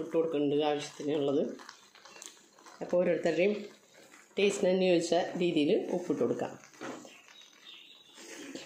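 Speech: a woman talking in short phrases, with a few faint knocks in the pauses between them.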